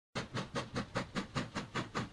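Steam locomotive chugging, as a sound effect: an even run of chuffs, about five a second.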